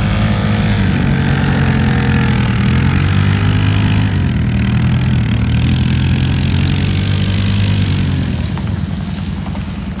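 Honda Fourtrax 300 ATV's single-cylinder four-stroke engine working hard under throttle as the quad plows through deep snow, its pitch dipping and climbing again a few times. The engine gets quieter about eight and a half seconds in.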